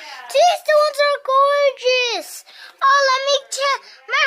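A young child's high-pitched voice in sing-song vocalising, short held and gliding notes broken into phrases.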